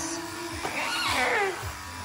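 An alpaca gives one whining cry about a second long that rises and then falls in pitch, over the steady buzz of electric shears.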